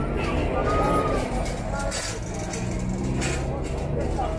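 City bus engines running in street traffic, a low steady hum with one engine rising in pitch in the second half as a bus pulls away, mixed with voices of people nearby.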